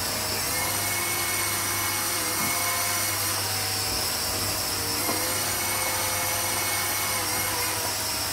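Air Hogs Vectron Wave toy flying disc hovering, its small electric motor and rotor giving a steady high-pitched whine.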